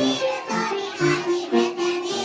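A group of young kindergarten children singing a song together as a choir.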